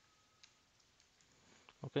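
A few faint clicks of computer keyboard keys being typed, the clearest about half a second in.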